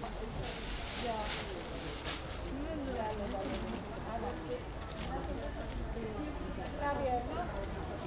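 Quiet background voices talking throughout, with rustling of a thin plastic bag being filled, loudest in the first two seconds.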